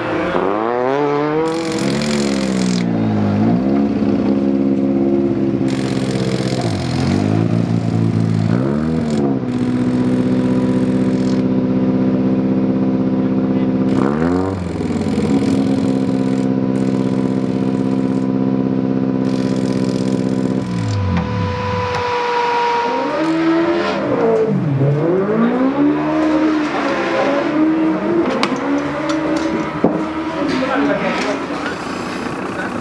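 Racing car engine revving, its pitch repeatedly dropping and climbing again as the throttle is lifted and reapplied, then holding one steady high note for about ten seconds with a brief dip partway, before the drops and climbs return near the end.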